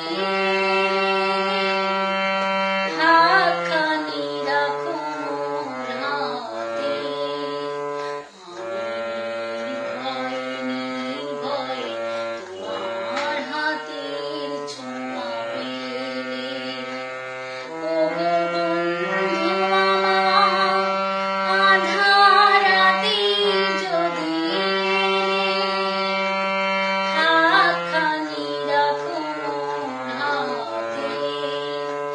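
A woman singing a Bengali song over sustained instrumental accompaniment, long held notes over a steady low drone that shifts pitch every few seconds.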